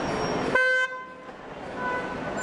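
A single short car horn toot about half a second in, over steady street noise; the street noise dips sharply right after the toot and swells back over the next second.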